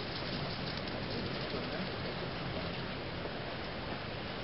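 Steady, even hiss-like background noise with two faint high ticks about a second in.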